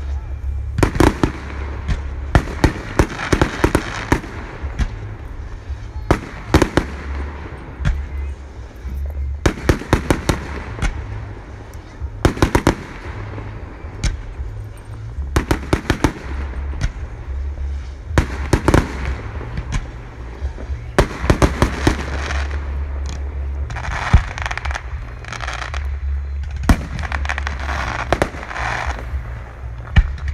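Aerial fireworks going off: repeated sharp bangs and crackles coming in irregular clusters, with onlookers' voices underneath.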